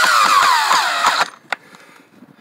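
Cordless drill driving a wood screw through a bench vise's mounting foot into a timber, its motor whine dropping in pitch as the screw goes home under load, then stopping a little over a second in. A single short click follows.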